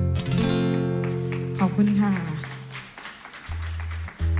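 Acoustic guitar played live: a chord struck at the start rings on with low notes and fades out around three seconds in, then a new low note comes in near the end. A brief voice is heard over the guitar just before the middle.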